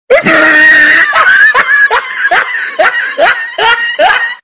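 Loud, high-pitched laughter, a long laugh that pulses about twice a second.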